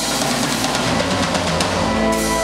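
Live rock band playing, the drum kit to the fore with a busy, driving pattern over electric guitar.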